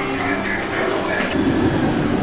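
Faint background chatter in a bar, then from about one and a half seconds in a steady low rumble of outdoor noise.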